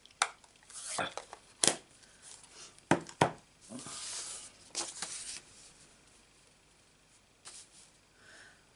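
Craft-desk handling: a plastic ink pad case clicking and being set down in a few sharp taps, then cardstock and paper sliding and rustling across a gridded mat.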